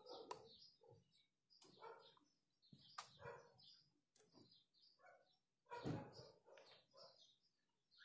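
Near silence, with faint scattered short sounds and a few soft clicks.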